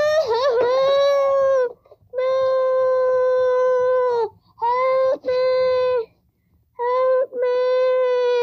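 A child's voice giving a series of long, held cries at one steady high pitch, about five of them, each a second or two long and dipping in pitch at the very end. These are play-acted cries for the toys.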